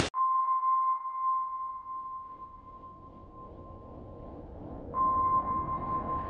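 Eerie ping sound effect: a single high, pure ringing tone, like a sonar ping or struck bowl, that fades slowly. It is struck again about five seconds in.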